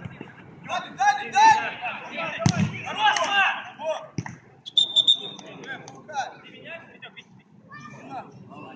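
Players shouting on a small outdoor football pitch. About two and a half seconds in there is a single sharp thud of the ball being struck, and about five seconds in a referee's whistle gives one short blast as a set piece is called.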